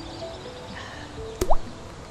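A single plop into liquid about one and a half seconds in, a sharp click then a quick rising bloop, as a gum nut drops into a cup of tea. Background music plays throughout.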